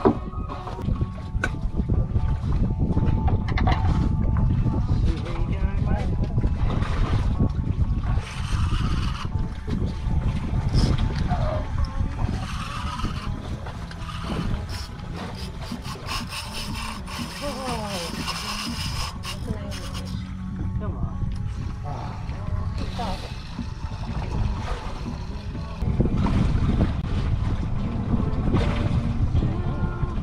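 Wind buffeting the microphone on an open boat at sea: a steady low rumble that eases a little in the middle and comes back stronger near the end.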